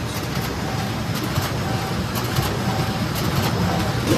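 Production printer running at full printing speed: a steady mechanical running noise with light ticks recurring as printed sheets feed out onto the output stack.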